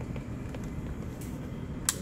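A single sharp plastic snap near the end as the gullwing door of a Revell 1/24 Mercedes-Benz SLS plastic model is lifted and clicks into its open position on its hinge.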